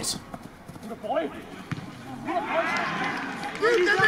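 Live pitch sound of a football match: players' voices calling out, fainter at first and thicker with overlapping shouts from about two seconds in.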